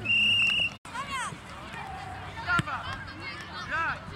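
Referee's whistle blown once, a steady high blast of under a second that stops play for a foul, then voices shouting.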